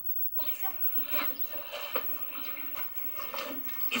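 A moment of dead silence, then faint, muffled voices and background noise played through a television speaker.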